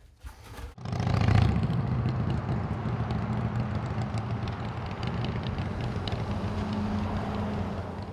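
Road traffic noise with a vehicle engine running steadily, starting suddenly about a second in.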